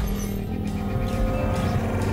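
News channel's closing logo jingle: sustained electronic music chords over a deep low rumble.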